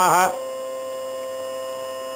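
A man's chanted Sanskrit verse ends on a held 'namaḥ' a moment in. It leaves a steady, even hum made of several unchanging tones.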